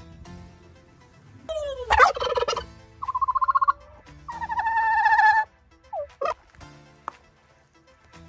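Domestic tom turkey gobbling: three loud, rapid warbling gobbles in quick succession from about a second and a half in. Two short calls follow a moment later.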